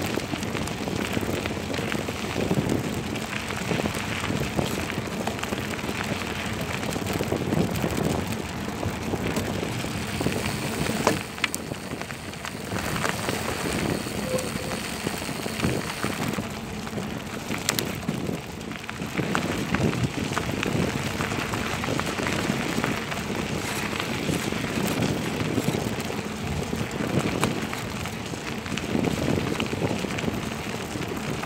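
Tyres rolling and crackling over a loose gravel dirt track, with wind rushing over the microphone. A few sharp knocks from bumps break the steady noise, the loudest about 11 seconds in.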